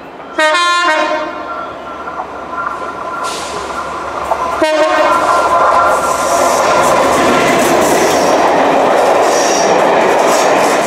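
A Class 67 diesel locomotive's five-tone horn sounds a short blast about half a second in and a second, shorter blast near five seconds. Then the locomotive and its coaches run past, with loud, steady wheel and rail noise.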